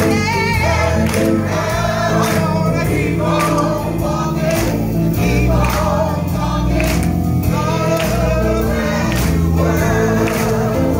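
Small gospel choir singing with a live band over a steady beat.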